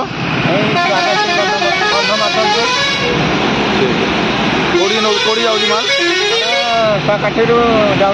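A man talking over steady road traffic noise, with a stretch of traffic noise alone in the middle.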